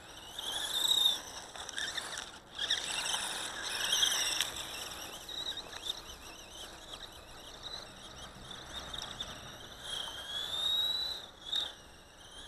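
High-pitched whine of a 1/18-scale 4WD electric RC buggy's motor and drivetrain, rising and falling in pitch as the throttle is worked.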